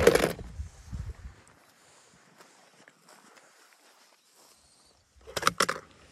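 Dry grass and brush crackling and rustling under footsteps, loudest at the start and dying away within about a second. A second short burst of rustling comes about five and a half seconds in, as evergreen branches are pushed aside.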